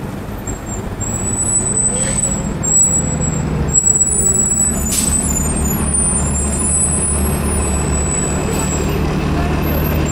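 Gillig Low Floor transit bus pulling in at a stop, its engine running steady and low, with a whine that rises and then falls away between about two and four seconds in. A short air-brake hiss follows about five seconds in.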